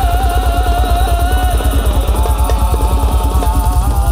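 Sholawat song played by a live band in dangdut koplo style: a fast, steady drum and bass beat under a wavering high melody line.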